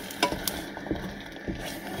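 Wooden spoon stirring egg and cheese around a stainless steel saucepan, knocking against the pan a few times, over the steady sizzle of the eggs cooking.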